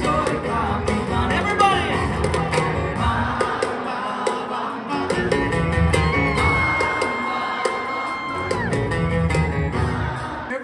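Live acoustic rock performance: acoustic guitars playing with male singing, including one long held note in the second half, and shouts from the crowd.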